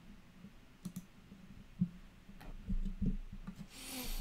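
Faint, scattered clicks and a few soft knocks of small handling at a computer desk, the sharpest about two seconds in.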